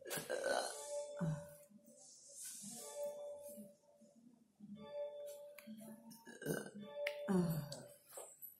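Operating theatre background: music playing with a recurring held tone, low murmuring voices, and a few light metal clicks of surgical instruments during skin suturing.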